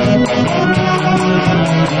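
Orquesta típica of Peru's central highlands playing Andean dance music, with saxophones, Andean harp and violin. Quick plucked harp notes run under the held saxophone tones.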